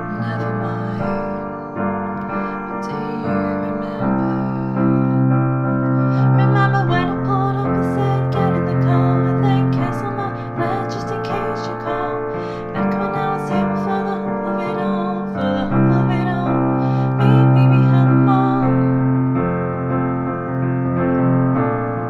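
Piano playing a repeating chord loop of F, B-flat major 7, G minor 7 and C, both hands sounding full sustained chords that change every second or two. A voice sings along over parts of it.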